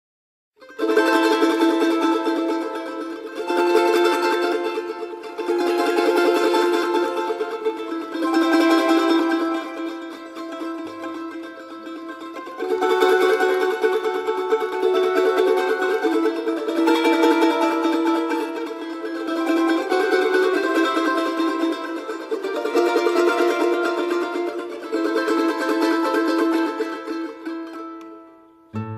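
Solo charango playing an instrumental Andean piece, high and bright with no bass underneath, starting after a brief silence about a second in and dying away near the end.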